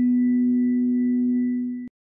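A single sustained ringing tone from the intro title music, with several steady overtones above a strong low note, cut off abruptly near the end.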